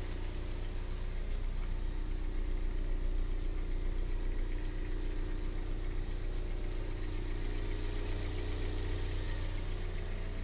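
A 2015 Ford Escape's 2.0-litre EcoBoost four-cylinder engine idling: a steady, even low hum.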